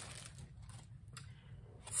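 Faint crinkling of a clear plastic bag as a small acrylic sign is slid out of it, a few soft rustles about halfway through.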